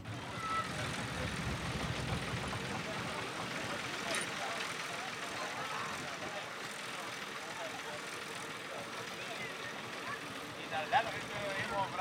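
Vintage tractor engine idling with a low rumble, strongest in the first few seconds, under the scattered talk of people around it.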